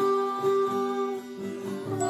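A song played on acoustic guitar and recorder, with voices singing long held notes. The music dips briefly in the middle between phrases.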